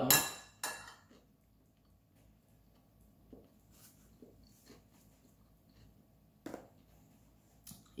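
A few soft, scattered clicks and clinks of cutlery and dishes being handled while picking at food, with one sharper click about six and a half seconds in.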